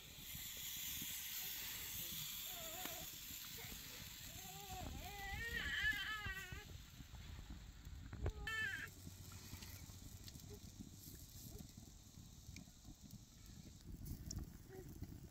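An animal calling twice: a wavering cry lasting over a second about five seconds in, and a short one around eight and a half seconds, over a faint steady hiss, with a single knock just before the second call.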